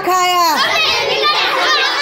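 A group of children shouting and cheering: one long, high, held shout that drops away about half a second in, then many excited voices at once.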